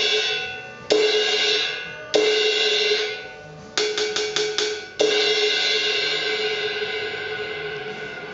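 Sabian 17-inch SR thin crash cymbal struck with a stick: single crashes a second or so apart, then a quick run of about five strokes around four seconds in, then one full crash about five seconds in that is left to ring and fade slowly. It has a quick rise and good sustain.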